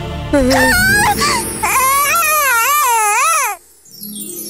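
A cartoon character's high-pitched voiced wailing cry, the pitch wavering up and down, cutting off suddenly near the end, over background music.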